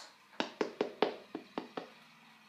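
A hard shoe toe being tapped by hand, seven quick sharp knocks in about a second and a half. The hard knock is meant to show a stiff toe, like a steel toe or something.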